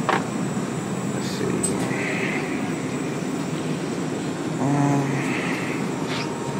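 Steady background hum and rush of a supermarket refrigerated aisle, the sound of the open cooler cases' fans and the store ventilation. A short low voice sound comes about five seconds in.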